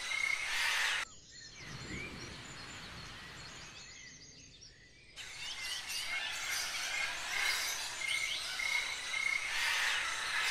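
Forest ambience: many birds chirping and calling over a steady background hiss. It drops abruptly to a quieter, sparser stretch about a second in and comes back to full strength about five seconds in.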